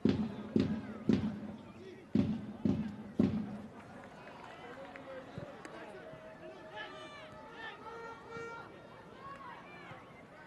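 Live sound from a football match: six loud, evenly spaced thuds in two groups of three over the first three seconds, then shouting voices from the pitch.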